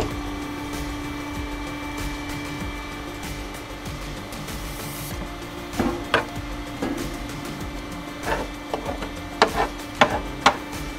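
Several sharp knocks and clatters on the metal of the hydraulic press and its tray, bunched in the second half, over a steady hum and background music.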